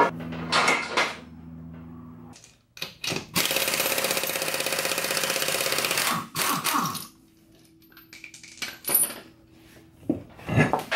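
Impact wrench hammering steadily for about three seconds, loosening a wheel's lug nuts to take the tire off. Short metallic knocks and clinks come before and after it.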